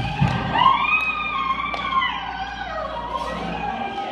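A woman singing an amplified gospel solo, holding one long note with vibrato that rises and then falls, over keyboard accompaniment.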